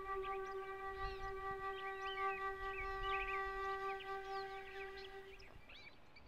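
Solo concert flute holding one long, steady low note that ends about five and a half seconds in, with birds chirping throughout.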